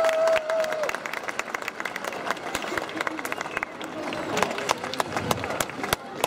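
Audience clapping and cheering, a dense run of uneven hand claps, with one held tone sounding for the first second.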